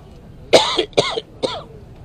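A man coughing three times in quick succession, about half a second apart.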